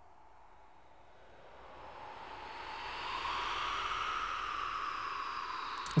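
Breathy, windy vocal transition: three layered mono tracks of breathing sounds, faint at first and swelling up from about a second and a half in to a steady soft rush.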